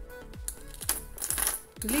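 Light clicks and crinkles of a plastic-and-foil blister pack of softgel capsules being handled with long fingernails, over background music with a steady beat.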